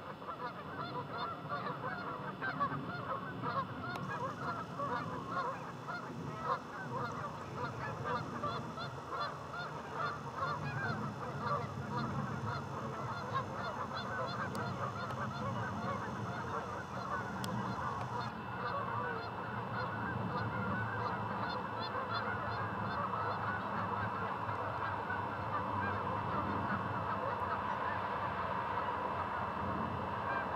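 A large flock of geese honking continuously, a dense chorus of many overlapping calls.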